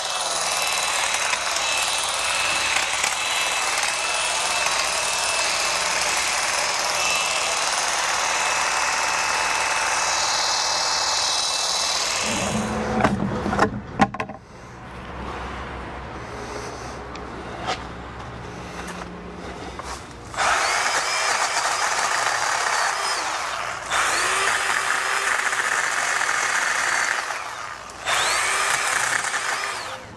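Milwaukee M12 cordless hedge trimmer running steadily for about twelve seconds, its blades cutting into brush. A few knocks follow and then a quieter stretch. From about twenty seconds in, the Milwaukee M12 cordless chainsaw runs in three bursts of a few seconds each.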